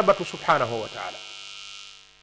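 A man's speech for about the first second, then a steady electrical mains buzz in the recording that fades out near the end.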